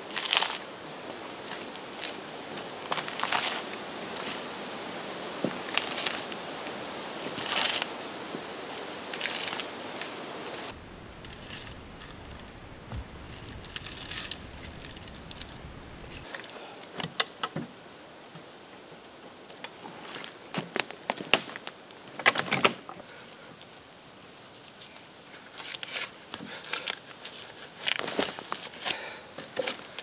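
Bark being peeled off a freshly felled log by hand tool: repeated tearing and crackling strokes, every second or two at first, then more scattered.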